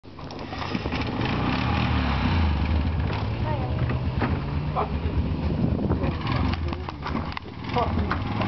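Car engine running with a low, steady hum whose pitch shifts slightly as the car is driven around, with people's voices heard faintly under it.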